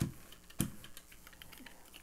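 Two light knocks about half a second apart, then a few faint small ticks: a paint brayer being handled and set down on the tabletop by the gel printing plate.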